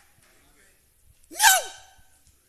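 A man's voice giving one short vocal exclamation into a handheld microphone about one and a half seconds in, its pitch rising then falling; otherwise only faint room noise.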